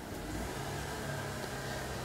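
A steady low background hum, even in level, with faint noise above it.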